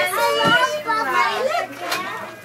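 Children's voices chattering and calling out over one another, with a brief thump about a quarter of the way through.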